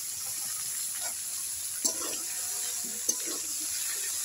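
Hot oil sizzling steadily in a wok as sliced bitter gourd and potato are tossed into it, with a couple of light clicks about two and three seconds in.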